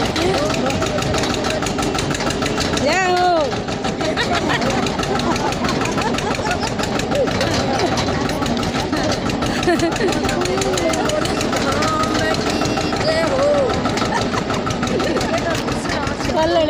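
Tractor's diesel engine running steadily while pulling a farm trailer, with the riders' voices talking over it and one calling out about three seconds in.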